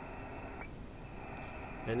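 Steady hiss of a SoftRock Ensemble II software-defined receiver's audio, tuned to the 20 m band with no signal yet in its passband, cut off sharply above the voice-width filter. A faint brief tick comes about half a second in.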